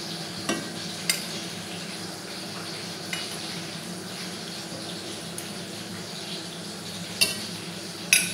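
Hot cooking oil sizzling steadily in a frying pan as fried vegetable slices are lifted out with metal tongs, with a few sharp clinks of the tongs against the pan and plate, the loudest near the end.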